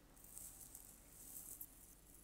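Near silence with faint, irregular high-pitched rustling and scraping: handling noise as she shifts position.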